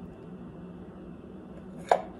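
Quiet room tone with a steady low hum, broken near the end by one short, sharp click.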